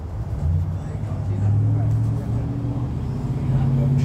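Low, steady engine hum that creeps slowly up in pitch and grows louder.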